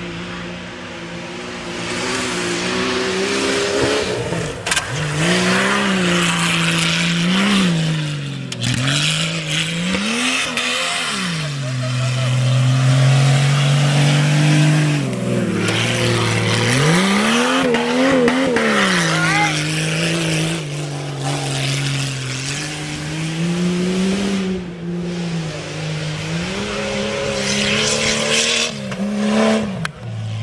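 Lifted Jeep Cherokee XJ race jeep's engine revving up and dropping back again and again, every two or three seconds, as it swings through the turns of a dirt slalom, with one longer steady pull in the middle.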